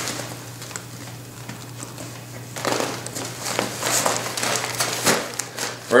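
Handling noise from a backpack's top lid being unbuckled and lifted off. After a quiet start, fabric rustles and buckles give a few sharp clicks and knocks from about halfway through.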